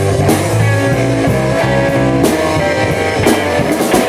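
Live blues band playing: electric guitars over bass and a drum kit with cymbals.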